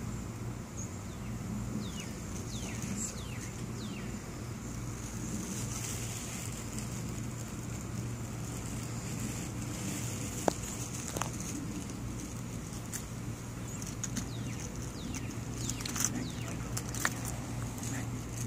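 Outdoor background: a steady low hum, as of distant traffic or machinery, with light wind on the microphone. A few faint high chirps sweep downward, and there are a few sharp clicks, the loudest about ten seconds in.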